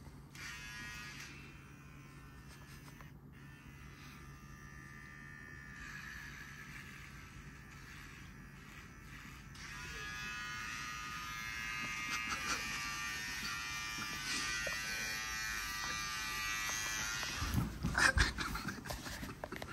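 Cordless electric beard trimmer buzzing steadily while cutting a sleeping man's beard, getting louder about halfway through as it is held close to his face. A thump near the end.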